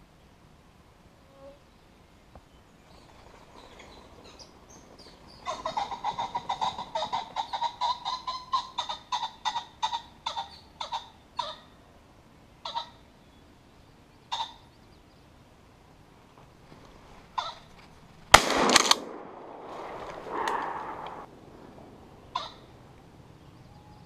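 A run of quick, repeated calls starting about five seconds in, thinning out into single calls, then a single loud shotgun blast about eighteen seconds in, followed by a short cry.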